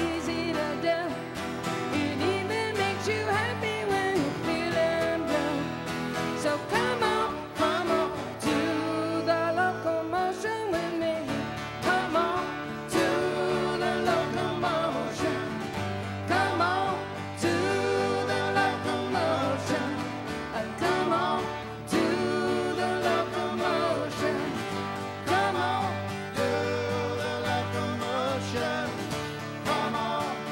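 Live music: a singing voice over steadily strummed acoustic guitar with band accompaniment.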